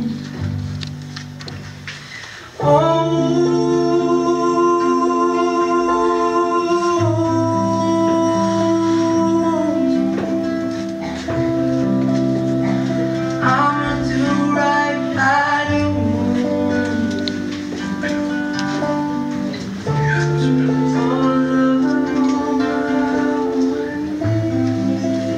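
A song sung with acoustic guitar accompaniment, with long held vocal notes over strummed chords. The music thins out briefly about two seconds in, then comes back in fully just before three seconds.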